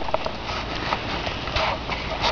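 Footsteps on a hiking trail: uneven steps a few times a second over steady outdoor noise.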